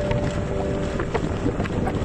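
Wind buffeting the microphone through the open window of a moving vehicle, a steady low rumble with road and engine noise underneath.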